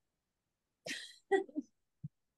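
A person coughing twice, about a second in, in short harsh bursts.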